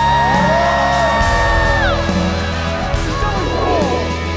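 Stage performance music: a long held note that slides up into place and drops away about two seconds in, over a steady deep bass.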